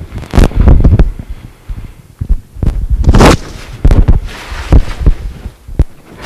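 Loud, irregular thumps and short noisy bursts picked up by a handheld microphone as it is handled and knocked about.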